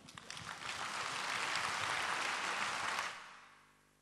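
Audience applauding: a few scattered claps that quickly build into full applause, which then fades away over the last second.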